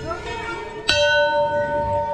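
Large hanging brass temple bell struck once about a second in, then ringing on with a long, wavering tone that pulses in loudness. Before the strike, the ring of an earlier bell is still fading.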